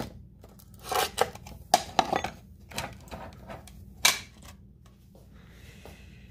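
Handling noise: a few light clicks and knocks with soft rustling in between, the sharpest click about four seconds in.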